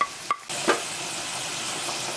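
Flaked saltfish frying in hot oil with sautéed onion, peppers and garlic: a steady sizzling hiss, after a few light clicks near the start.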